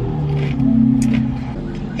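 Steady low rumble of a car engine heard inside the cabin, with a voice held on one even pitch for about a second in the middle.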